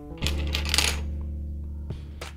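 Small hard plastic LEGO parts clicking and clattering against each other as a minifigure is handled, over soft background guitar music with a plucked note near the start.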